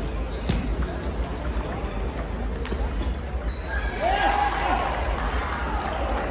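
Table tennis balls clicking off paddles and tables, in sharp scattered ticks from many tables in play, over a murmur of voices in a large echoing hall. A louder voice rises briefly about four seconds in.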